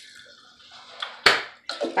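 Lime juice squirted from a squeeze bottle into a tablespoon, then tipped into a tumbler of warm water with one short splash about a second in.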